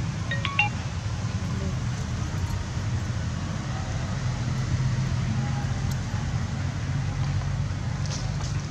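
A steady low rumble of background noise, like traffic or an engine, with a few short high chirps about half a second in.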